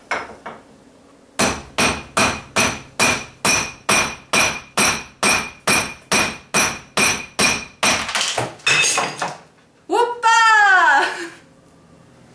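A hammer striking a steel masonry chisel in a steady run of about three blows a second, each blow ringing, as old ceramic countertop tile is chipped off. Near the end a voice calls out loudly.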